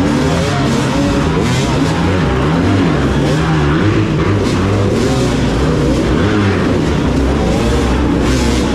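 Several dirt-bike engines revving at close range inside a concrete culvert, their pitch rising and falling over and over as riders work the throttle to climb through rocks and water.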